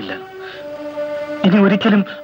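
A man's voice speaking briefly over background film music of long held notes that change pitch partway through.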